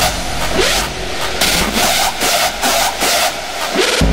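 Hardstyle dance music in a breakdown: the deep bass kick drops out, leaving high percussion and several short swooping pitch glides from a synth or effect sound. The heavy kick comes back right at the end.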